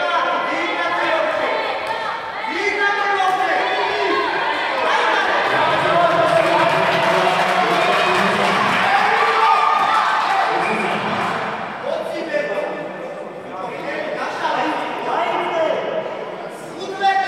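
Several voices around the mat shouting and calling out over one another at a karate bout, loudest in the middle of the stretch.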